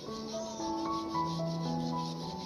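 Thick leather glove rubbing over a cat's fur, a soft steady rubbing, over background music playing a slow melody of held notes.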